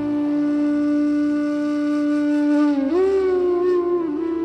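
Slow meditation background music: one long held, wind-like note that slides up to a slightly higher note about three seconds in and holds it.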